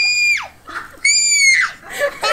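Two long, high-pitched screams from a video played back over speakers, one at the start and another about a second in, each held for about half a second before the pitch drops away.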